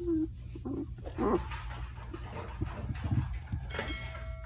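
A newborn German shepherd puppy, five days old, giving short squeaks and grunts, several in the first second and a half, the loudest a rising squeak about a second in. A steady low hum runs underneath, and there is a click near the end.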